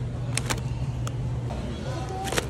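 A steady low hum, with two sharp crackles of plastic food packaging being handled about half a second in.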